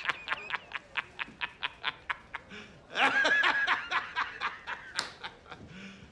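A person laughing hard: a long run of quick ha-ha pulses, about six a second, with a second, higher-pitched peal about three seconds in, trailing off near the end.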